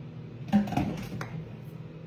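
Kitchenware knocking on a kitchen counter as dishes are moved aside: one clatter about half a second in and a lighter click a little later, over a steady low hum.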